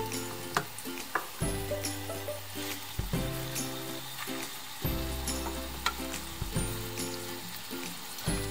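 Chicken burger patties sizzling steadily as they fry in hot olive oil in a non-stick pan, with a few short clicks and scrapes of a wooden spatula against the pan.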